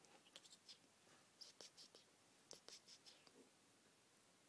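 Faint scratching and stirring of cat litter granules, in a few short clusters about one and a half and two and a half seconds in.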